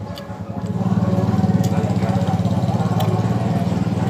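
A small engine running steadily close by, growing louder about a second in and then holding.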